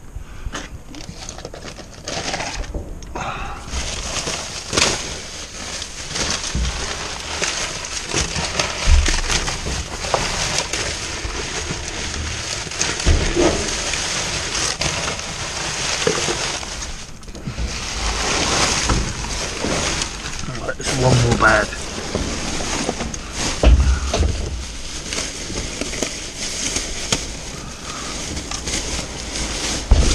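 Plastic bin bags and bubble wrap rustling and crinkling as rubbish is rummaged through by hand, with occasional knocks against the bin.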